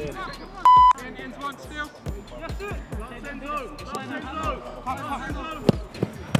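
Background music under men's voices calling out. A short, loud single-pitched beep sounds about two-thirds of a second in, and a sharp knock comes near the end.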